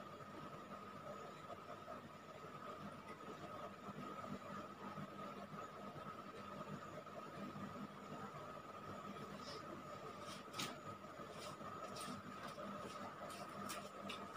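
Quiet room tone with a faint steady high-pitched hum, and a few soft clicks and knocks in the last few seconds as a person gets up off a yoga mat.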